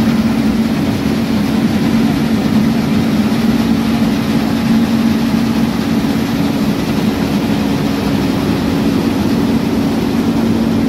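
Combine harvester running steadily: an even engine drone with a strong, unchanging low hum.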